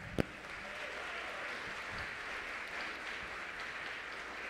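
Audience applauding steadily, with one sharp click just after the start.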